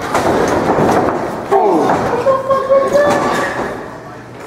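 A wrestling ring's mat taking a heavy body impact, with a rumbling thud and a few knocks. After about a second and a half, a man gives a drawn-out shout that falls in pitch and then holds one note.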